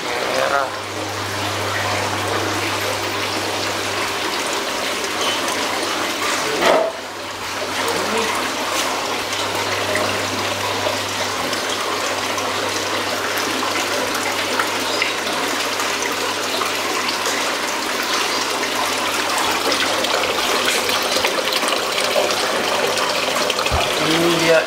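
Water running steadily into an aquarium from a hose at the surface, over a low steady pump hum. The flow dips briefly about seven seconds in.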